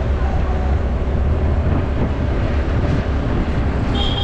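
Steady rumble of riding a motor scooter along a street: wind buffeting the microphone, mixed with the scooter's small engine running at a constant speed.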